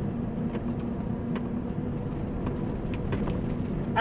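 Scania 113 truck's 11-litre straight-six diesel engine running steadily while driving, with road and tyre rumble, heard from inside the cab as a steady low drone.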